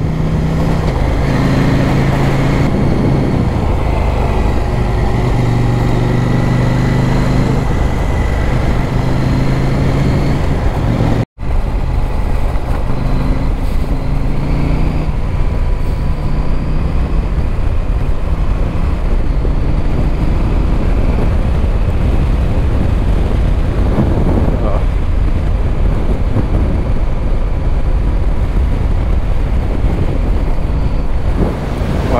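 Adventure motorcycle engine running steadily as the bike rides along a gravel road, its pitch shifting a little with the throttle. The sound cuts out for an instant about a third of the way in.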